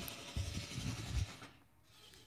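Handling noise from the camera being set into a tripod: a few dull low thumps and rubbing.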